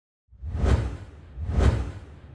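Two whoosh sound effects, each swelling to a peak with a deep low boom under it, about a second apart, then fading away.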